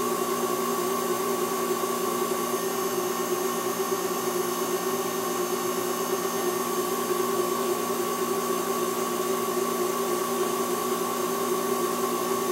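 Small pen-turning lathe running steadily with a constant motor whine and hum while a paper towel buffs a shellac friction finish on the spinning white oak pen blank.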